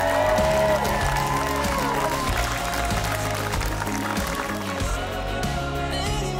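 Wedding guests applauding as the couple recesses, over a song with a steady beat.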